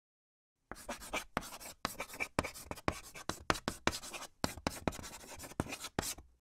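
Chalk writing on a chalkboard: a quick run of short strokes and sharp taps, starting about a second in.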